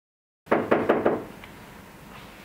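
Dead silence for about half a second, then a quick run of about five knocks, followed by low room noise.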